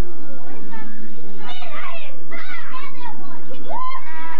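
Several young children's voices talking and calling out over one another, growing busier about halfway through.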